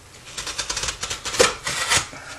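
A pocket knife cutting along the seam of a cardboard shipping box: a quick run of short, scratchy rasping strokes that starts about half a second in and grows louder toward the end.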